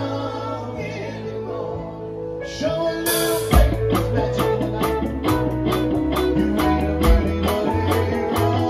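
Live band playing with keyboard and electric guitar holding sustained notes; about three seconds in the drums come in with a cymbal crash and carry on in a steady beat.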